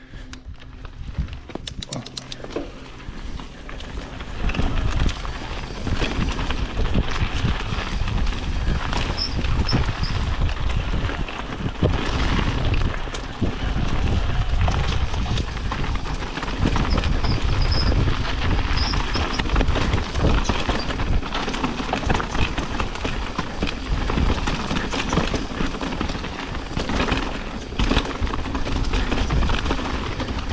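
Mountain bike rolling fast down a rocky, loose slate trail: tyres crunching over stones and the bike rattling over rocks, with wind buffeting the camera microphone. It gets louder from about five seconds in.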